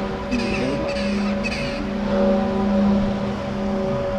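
A crow cawing three times in quick succession, about half a second apart, over background music of steady held notes.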